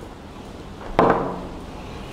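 A single sharp clunk about a second in, as a pair of steel multipurpose shears is set down on a wooden workbench, dying away over about half a second.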